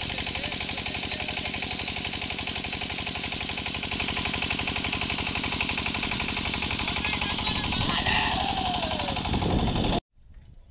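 An engine running steadily nearby with a fast, even knocking beat. A voice calls out near the end.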